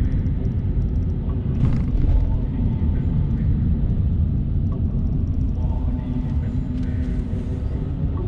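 Steady low rumble of a Mercedes-Benz car driving slowly through city traffic, heard from inside the cabin: road and engine noise.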